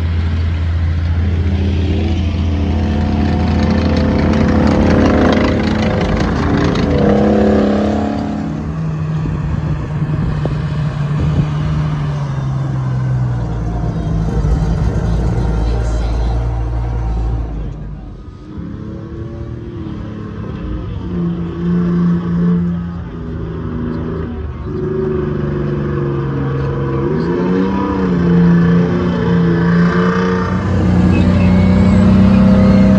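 Heavy military vehicle engines running and revving as vintage army vehicles drive past on a dirt arena, the engine pitch rising and falling with the throttle. The sound changes abruptly about 18 seconds in as a different vehicle takes over.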